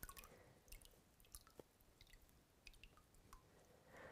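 Near silence with a handful of faint, irregular drips: water draining out of the bottom of a terracotta pot into a tub of water after bottom-watering.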